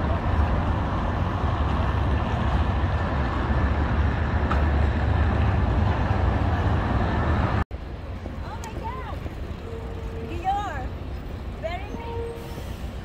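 Busy city street ambience: steady traffic noise with a heavy low rumble. About eight seconds in it cuts off suddenly to a quieter street bed with a few brief passing voices.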